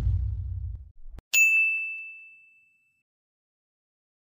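A single bright ding sound effect about a second in, ringing one clear high tone that fades away over about a second and a half. Before it, the low rumble of the intro sting dies away.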